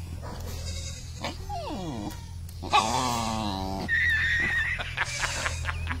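A dog whining: a short falling whine, then a longer wavering whine about three seconds in, then a high thin whimper, with a few light clicks near the end.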